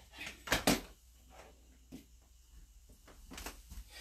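Handling noises: two sharp knocks about half a second in, then a few softer clicks near the end, while a hair dryer's plug is being plugged in. The dryer itself is not yet running.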